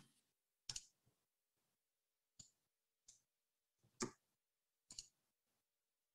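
Near silence broken by a handful of short, scattered clicks, the clearest about four seconds in.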